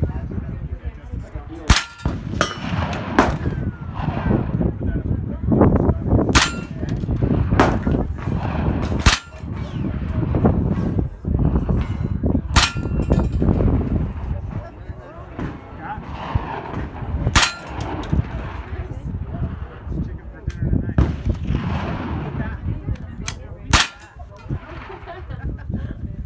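.22 rimfire rifle fired shot by shot: about a dozen sharp cracks at irregular gaps of one to several seconds, several of them followed by a brief metallic ring. Low wind rumble on the microphone runs underneath.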